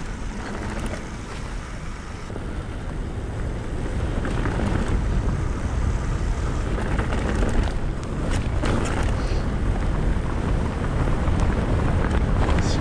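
Wind buffeting the camera's microphone together with mountain bike tyres rumbling over a grassy, rutted track, with short knocks and rattles from bumps. It grows louder over the first few seconds as the bike picks up speed.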